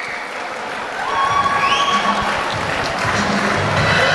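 Audience applauding a boxer's ring introduction, with music coming in about a second in and a low beat building underneath.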